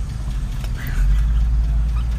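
Car engine idling, heard from inside the cabin: a steady low rumble that grows louder about a second in.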